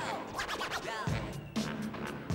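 A beat juggle on two turntables: quick rising and falling record scratches, then a boom-bap hip-hop drum break cut back in with heavy kick hits about a second in and again half a second later.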